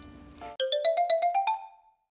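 A short editing jingle: about nine quick chiming notes climbing step by step in pitch, fading out after about a second.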